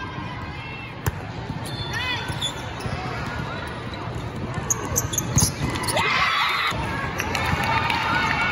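Indoor volleyball in a large, echoing hall: a sharp smack of the served ball about a second in, sneaker squeaks on the court floor, and several more hard ball contacts a little past the middle. Players' calls and spectator voices rise briefly near the end over a steady hall murmur.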